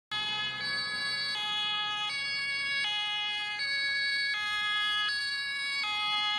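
German two-tone ambulance siren (Martinshorn) on a German Red Cross Mercedes-Benz Vito, alternating between a high and a low tone about every three-quarters of a second.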